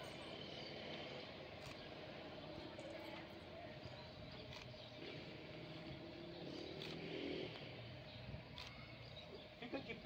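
Faint outdoor background of distant traffic hum and far-off voices, with a few faint sharp clicks scattered through it. A man's voice starts right at the end.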